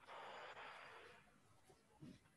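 A faint, soft breath of air, about a second long, that stops about a second in: a slow, controlled breath in a belly-breathing exercise.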